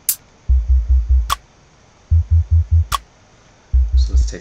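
A sparse electronic beat playing back: repeated runs of four deep bass hits about a fifth of a second apart, with a single sharp clicky hit between each run.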